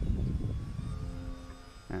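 Faint, steady drone of a distant radio-controlled biplane's motor and propeller in flight, over a low rumble of wind on the microphone.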